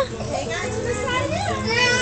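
Young children's voices, with a high-pitched child's cry or shout near the end, over a steady wash of running water.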